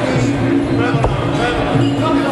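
A single low thud about a second in, an impact in a Thai boxing match, heard over voices and steady low background tones.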